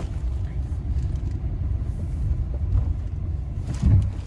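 Steady low rumble of engine and road noise inside the cabin of a moving Hyundai Venue turbo iMT, whose engine is a 1.0-litre three-cylinder turbo petrol. A short thump comes near the end.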